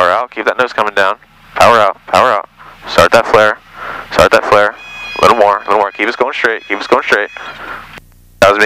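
A person talking over the aircraft intercom nearly throughout, with a low engine hum beneath. A steady high tone sounds from about five seconds in to near the end.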